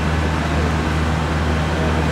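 Steady low hum of a high-speed electric train standing at a station platform, its onboard equipment running, with an even wash of station noise.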